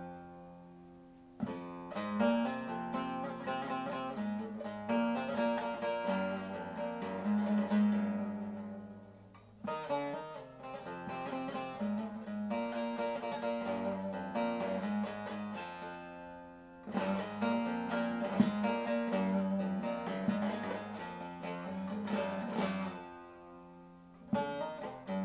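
A bağlama (long-necked Turkish saz) played solo: a folk melody over a steady low drone, in phrases of about seven or eight seconds, each fading out briefly before the next begins.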